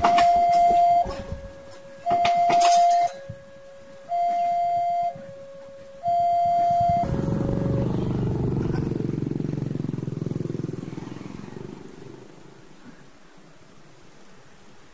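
Railway level-crossing warning alarm sounding a two-tone signal, a higher and a lower note taking turns about once a second, while the last wagons of a passing train clack over the rail joints in the first few seconds. The alarm stops about seven seconds in, and motorcycle and car engines start up and pull away over the crossing, fading.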